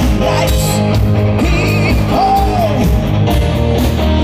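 Live rock band playing, with electric guitars, bass guitar and drums under a male lead singer whose sung line rises and falls about halfway through.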